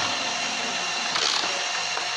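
Plastic gear mechanism of a Tomica toy parking tower rattling steadily as its yellow handle is turned, rotating the parking levels.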